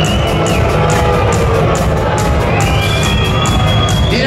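Heavy metal band playing live through a loud PA, with drums, bass and electric guitars and a steady cymbal beat of about four strokes a second. A high note glides up and is held through the second half.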